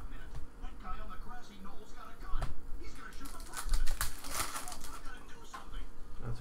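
Panini Prizm baseball cards flicked and slid against one another in the hands as a stack is thumbed through, with light clicks and a denser stretch of rapid rustling a little past halfway.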